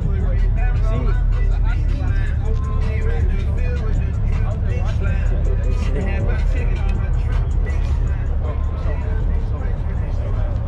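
Steady low rumble of idling car engines, with people talking and music over it.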